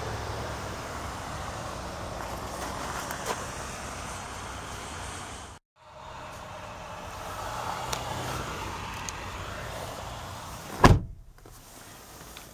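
A 2009 Chevrolet Impala idling, a steady low hum heard inside the cabin. The sound cuts out briefly about halfway through, and there is a single loud thump near the end.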